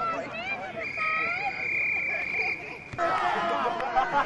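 A referee's whistle blown in one long steady blast of about a second and a half, over the chatter of people on the sideline. Near the end the chatter suddenly gets louder.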